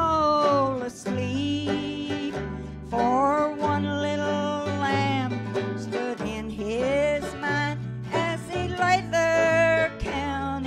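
A woman singing a slow country-style song in held, wavering notes, accompanied by a strummed acoustic guitar, with low bass notes underneath.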